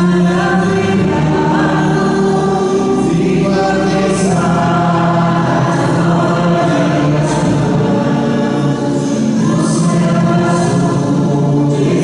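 A church choir singing a hymn, held notes carrying on without a break, sung as the entrance hymn during the procession at the start of Mass.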